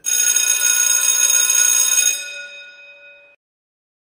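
A bell ringing: many ringing tones start suddenly, hold steady for about two seconds, then die away and cut off about three seconds in.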